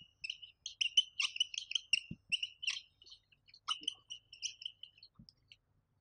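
A marker squeaking and scratching on a whiteboard in quick short strokes as words are written. It stops about half a second before the end.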